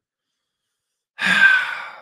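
Silence, then a little over a second in a man's breathy sigh close to the microphone, fading away.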